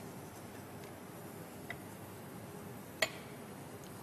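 Quiet room tone with two small utensil clicks as soup is ladled into a bowl: a faint one under two seconds in and a sharper one about three seconds in.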